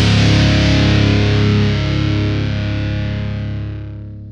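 Rock music: a distorted electric guitar and bass hold a final chord that rings out, then slowly fades away from about halfway through.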